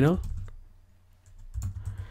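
Typing a short word on a computer keyboard: a few light key clicks in the second half.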